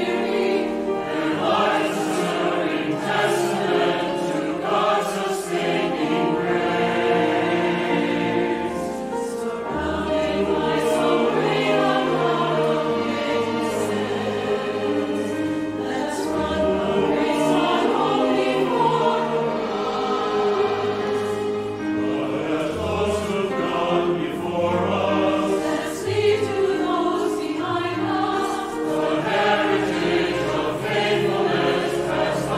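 Mixed choir of men and women singing a hymn-like piece with orchestral accompaniment of strings and brass, in sustained, full chords.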